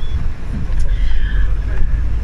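Tour bus engine and road noise heard from inside the moving bus: a loud, steady, deep rumble.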